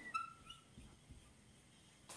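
Whiteboard marker squeaking briefly against the board as it writes: a thin, high squeak lasting about half a second, then faint quiet.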